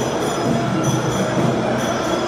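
Loud, steady din of a large indoor crowd, with music mixed in.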